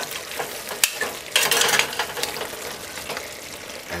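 Cow foot pieces sizzling in hot oil in a pressure cooker on a high flame, the hiss swelling in irregular surges, loudest about a second and a half in, with a sharp click a little before.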